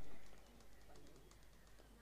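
Near-silent open-air ambience with faint bird calls.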